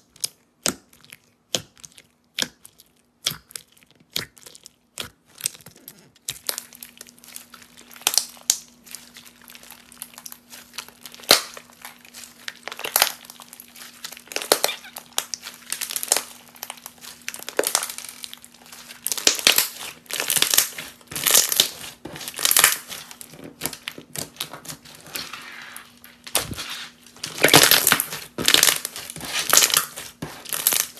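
Clear crunchy slime packed with clear and teal plastic pieces being worked by hand: poked in its jar at first, giving separate sharp clicks and pops, then squeezed and pressed, giving dense crackling and crunching bursts that get louder towards the end.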